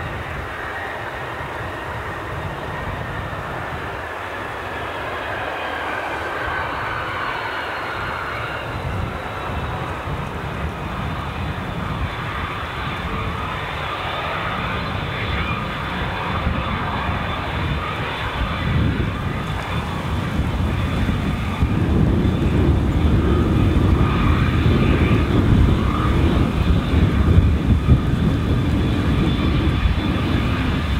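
HondaJet's two GE Honda HF120 turbofans whining steadily at taxi power as the jet approaches. The sound grows louder, with a low rumble rising in the last third.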